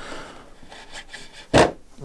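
A thin metal body pin scraping as it is pushed through the RC crawler's front body mount. Near the end there is one short, sharp knock.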